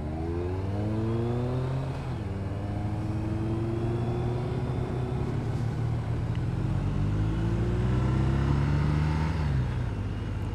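BMW R1250 RT's boxer twin engine accelerating under load, its pitch rising, dropping about two seconds in at a gear change, then rising steadily again before falling near the end. Wind rushes over the helmet camera.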